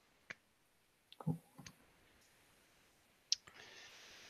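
Two sharp, isolated clicks, one just after the start and one near the end, in an otherwise quiet room; a short word is spoken softly at about a second in.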